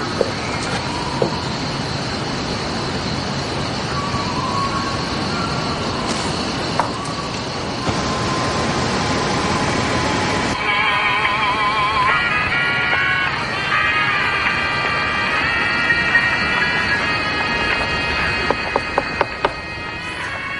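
Radio static hiss from an old radio set, with a steady high whistle, cutting off suddenly about halfway through. A music score with wavering high tones follows, with a few light taps near the end.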